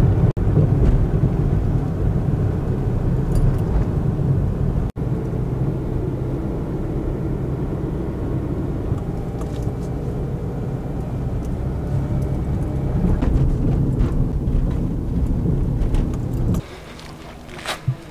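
A car driving, with a steady low engine and road rumble heard from inside the cabin. About a second before the end it cuts off suddenly to much quieter outdoor background.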